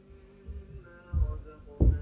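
Dull low thumps, the loudest two in the second half, the last the strongest, over faint background music with a slowly gliding melody.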